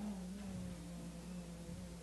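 Faint, steady drone from an electronic shruti box: one low held tone with a weaker overtone above it.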